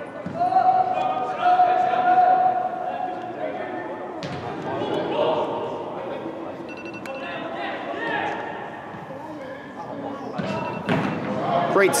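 Voices of players and spectators calling out across a large indoor sports hall, with one long held call early on and a sharp thud of a soccer ball being kicked about four seconds in, echoing off the hall walls.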